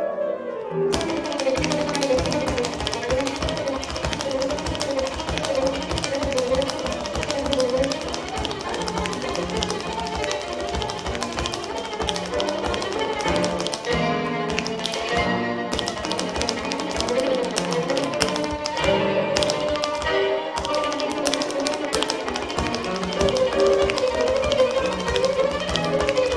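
Tap shoes striking a stage floor in fast, dense rhythmic patterns over instrumental music; the tapping starts about a second in.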